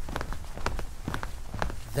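Footsteps walking, a series of short steps about two a second.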